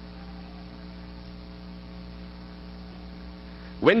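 Steady electrical mains hum with a light hiss underneath, unchanging throughout. A man's voice starts just before the end.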